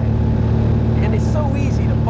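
Steady, loud engine and propeller drone of a small propeller airplane, heard from inside the cabin. A man's voice briefly sounds over it about a second in.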